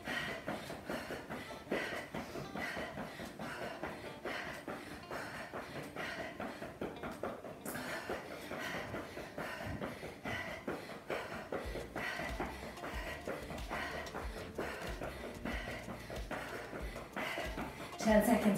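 Sneakers pounding in a fast jog in place on a rubber-matted floor, a quick, even run of footfalls, with deeper thuds joining about two-thirds of the way through. Hard breathing from the all-out effort runs under the steps.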